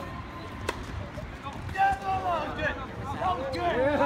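People's voices talking from about two seconds in, with one sharp knock shortly before them.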